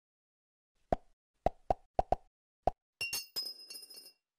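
Water drops plopping into water: six short plops in under two seconds, then about a second of brighter, rapid small splashes near the end.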